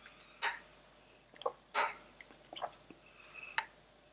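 Someone sipping a thick smoothie through a metal straw: a handful of short, quiet slurps and swallows spaced through the few seconds, the loudest nearly two seconds in.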